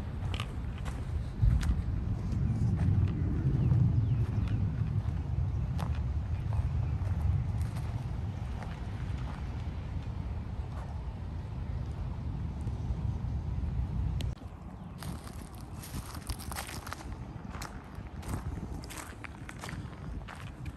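Footsteps of someone walking outdoors, light clicks and scuffs, over a low rumble that swells a few seconds in and then cuts off suddenly about two-thirds of the way through.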